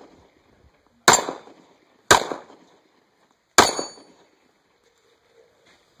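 Three semi-automatic pistol shots, the first two about a second apart and the third a second and a half later. The last shot is followed by the brief ringing clang of a struck steel plate.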